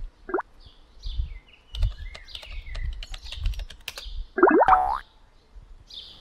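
Cartoon sound effects: quick computer-keyboard typing clicks with faint high chirps, a short rising glide just after the start, and a loud rising springy glide about four and a half seconds in.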